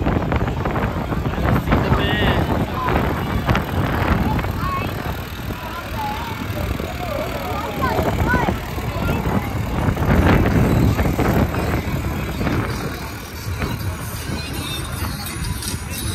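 Street parade ambience: a crowd of spectators chattering, with children's voices calling out, as a pickup truck towing a parade float drives slowly past, and music mixed in.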